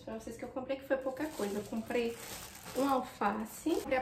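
A woman talking, with a short rustle of packaging about two seconds in.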